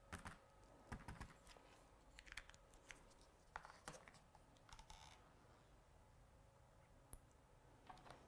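Near silence, broken by a few faint clicks and light taps as stamping supplies (clear acrylic stamp, ink pad, stamping platform) are handled on a craft mat.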